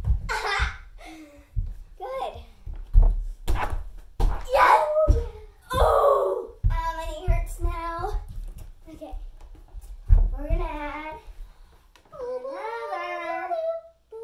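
Girls' voices calling out and chattering, with several dull thuds of feet landing on an inflatable tumbling mat. Near the end a girl sings a few held notes.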